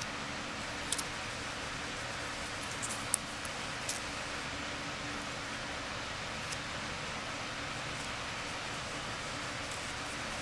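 Steady hiss with a few short, light clicks and taps as plastic-sleeved trading cards are handled and laid on a stack. The sharpest click comes about three seconds in.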